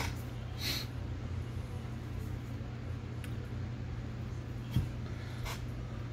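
Small handling sounds at a fly-tying vise: a few faint clicks and rustles from fingers and materials, and one soft thump about three-quarters of the way through, over a steady low hum.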